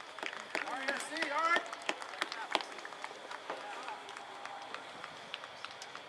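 Voices shouting and calling across an outdoor soccer field, loudest in the first couple of seconds, with scattered short sharp knocks throughout.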